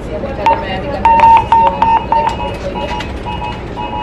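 Police radio emergency alarm going off after the orange emergency button on a handheld radio is pressed: a rapid series of short electronic beeps, loudest about a second in and then alternating between two pitches.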